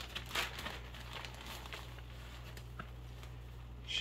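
Plastic zipper-top bag crinkling softly as gloved hands open it and handle seasoned chicken drumsticks inside, the rustles strongest in the first second or so, over a steady low hum.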